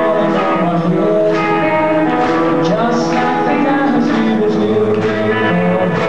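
Male vocalist singing live with guitar accompaniment, the voice holding long sung notes over the guitar.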